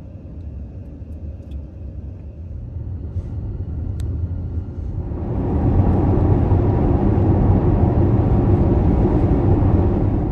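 Road and tyre noise heard inside a moving car: a low steady rumble that becomes louder and hissier about halfway through, at highway speed. A single brief click comes just before the change.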